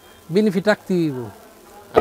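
A man's short wordless vocal sound in the first second and a half, ending in a tone that falls in pitch.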